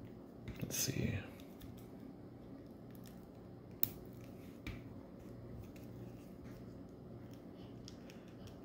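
Plastic action figure being handled and posed: faint rubbing and two sharp clicks a little past the middle as its joints are moved. A short breathy mouth sound about a second in.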